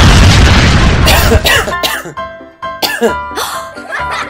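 A sudden loud burst with a heavy low rumble lasting over a second, then several short coughs over background music.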